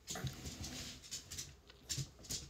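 A small pet dog fussing for attention: a run of short, soft noises and rustling close by. Its owner takes the fussing as the dog wanting to go for a walk.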